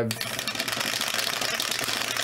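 Two dice rattling rapidly inside a clear plastic dice-tumbler dome as it is shaken by hand: a dense, steady clatter of tiny clicks.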